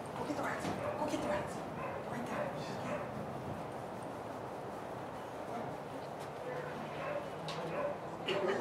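A dog barking and yipping now and then over indistinct voices of people standing around.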